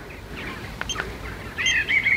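Small birds chirping, with the calls growing clearer near the end. Two faint clicks come about a second in.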